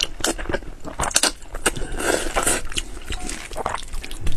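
Close-miked slurping and chewing of saucy noodles: a run of wet mouth clicks and smacks, with longer slurps about two seconds in.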